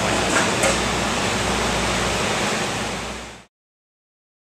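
Steady background hiss over a low hum, like a running air conditioner or generator, fading out quickly about three and a half seconds in and cutting to silence.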